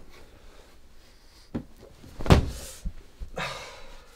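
Handling noise on a bed: a few dull thumps, the loudest a little past the middle, then a short hiss near the end.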